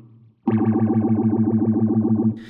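Electric guitar chord ringing through a MayFly Audio Sketchy Zebra phaser set to full speed and full feedback. After a brief pause the chord enters about half a second in and sustains with a fast, even pulsing warble, an almost lasery sound.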